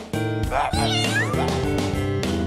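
A cat meow sound effect from a video slot game, one drawn-out call of about a second that rises and falls in pitch, starting about half a second in over upbeat electronic game music.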